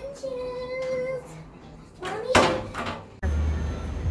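A voice holding one long high note, then a loud knock a little over two seconds in. Near the end the sound cuts suddenly to the steady low rumble of city street traffic.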